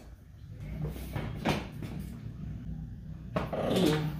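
Light knocks and clicks of a plastic UTV door panel being handled and pressed onto its frame, with a louder, longer sound about three and a half seconds in, over a steady low hum.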